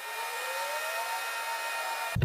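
A small electric motor whirring over a steady hiss, with a whine that rises in pitch over about a second and a half and several steady higher tones above it.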